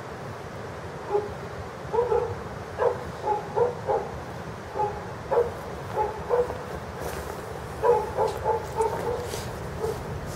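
A dog barking repeatedly in short, irregular runs of barks, over a steady low background rumble.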